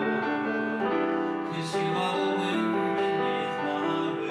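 Grand piano played live: a melody over held, changing chords.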